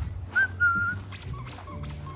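A golden retriever puppy's high-pitched whine: one short rising yelp about half a second in, held for about half a second, followed by a few fainter short whimpers.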